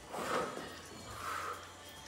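A woman's hard breathing while doing a jumping exercise: two short, noisy breaths, the first just after the start and the second about a second later.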